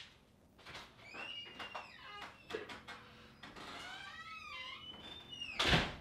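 Faint squeaks and clicks, then one louder thump about half a second before the end.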